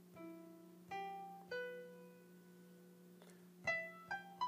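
GarageBand for iPad's Grand Piano sound playing four single notes one after another, each struck and left to fade, the last near the end, over a faint steady hum.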